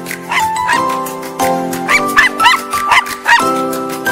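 Music with sustained chords, over which a small dog gives short high yips: a couple about half a second in, then a quick run of them in the second half.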